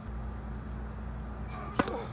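Tennis racket striking the ball on a flat serve: one sharp crack near the end.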